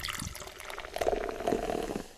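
Pouring-liquid sound effect of a Coca-Cola logo animation, pitch-shifted and layered by a 'G Major' audio effect, with a steady tone underneath in the second half.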